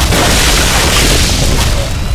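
Film-trailer explosion sound effect: a loud boom that sets in suddenly, its rumbling noise carrying on through the two seconds.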